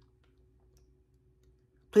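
Near silence: room tone, until a voice starts speaking at the very end.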